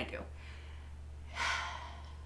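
A woman's sharp, audible intake of breath about one and a half seconds in, the start of a sigh.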